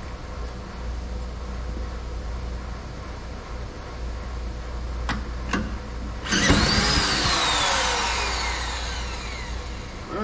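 Small single-cylinder petrol engine on a cement mixer spun over with a cordless drill: a sudden loud start about six seconds in, then a whine that falls in pitch and fades over about three seconds as it slows. It comes close to starting but does not catch, just after its plugged carburettor main-jet passage was cleared.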